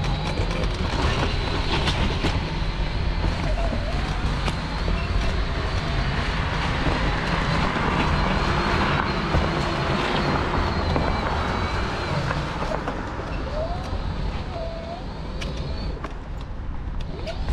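Mobility scooter driving steadily over fresh snow: continuous motor and tyre noise with a low rumble.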